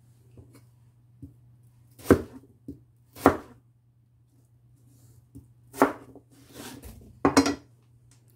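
Chef's knife chopping through Korean radish (mu) onto a plastic cutting board: a handful of separate, irregularly spaced chops, the loudest about two, three, six and seven seconds in, with lighter taps between. A low steady hum runs underneath.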